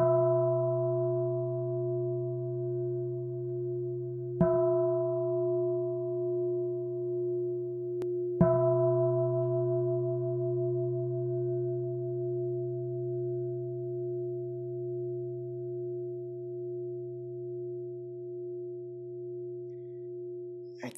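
A meditation singing bowl struck three times, about four seconds apart, each strike ringing on in a low, steady hum with a slow wavering pulse and fading gradually over the rest of the time.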